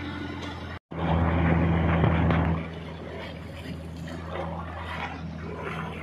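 A boat's engine running steadily with a low hum. The sound cuts out for a moment about a second in, then comes back louder for about a second and a half before settling to a steadier, quieter level.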